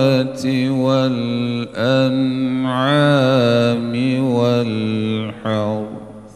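A man's solo Quran recitation in the melodic chanted style, heard through a microphone. He sings long held notes with ornamented glides and takes short breaths between phrases. His last phrase ends just before the close and fades away.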